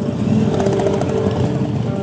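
Motorcycle engines rumbling as bikes ride past close by, swelling louder just after the start.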